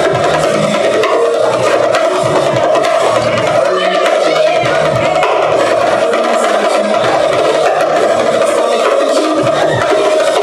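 Live percussion: a drummer playing a dense run of fast strokes on a small drum on a stand.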